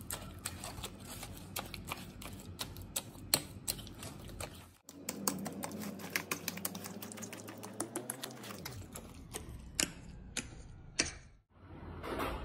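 A metal fork clicking and scraping against a ceramic plate while mashing soft roasted eggplant, a quick irregular run of clicks with a short break about five seconds in.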